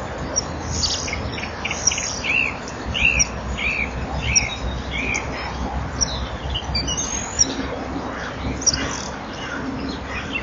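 Birds chirping and calling, with a run of five short arched notes, each about two-thirds of a second apart, from about two seconds in, and scattered higher chirps. A steady low hum runs underneath.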